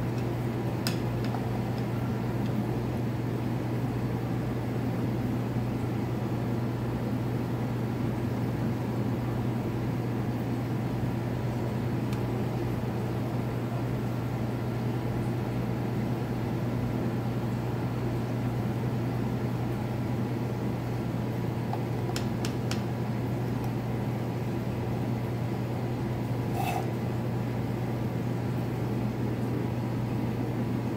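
A steady low mechanical hum with even background noise. There are a few faint ticks: one about a second in, a small cluster about two-thirds of the way through, and one more near the end.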